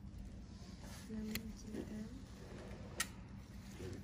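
A brief murmured voice about a second in, without clear words. Two sharp clicks come with it, the louder one about three seconds in, over a faint steady hum.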